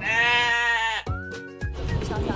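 Comic sound effect of a sheep bleating: one long "baa" of about a second. A short higher tone that slides up follows it.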